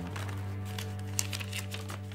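Background music holding steady low notes, with scattered light clicks and crinkles from a plastic toy blister pack being handled and opened.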